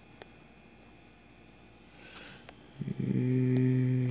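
Quiet room tone, then about three seconds in a low steady hum or buzz with overtones starts and holds for about a second and a half.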